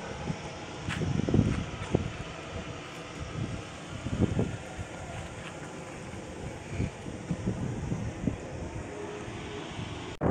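Wind buffeting the microphone outdoors: uneven low rumbling gusts that rise and fall throughout.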